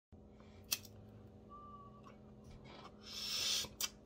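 A person smoking a small hand pipe: a single sharp click about a second in, then a faint breathy hiss that builds and stops shortly before the end, followed by another short click.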